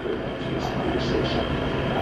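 Steady background rumble with faint, indistinct voices in the middle.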